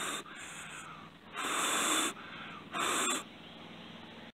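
Someone blowing on a smouldering cotton fire-roll ember in about four short puffs of breath. The two strongest puffs come about one and a half and three seconds in.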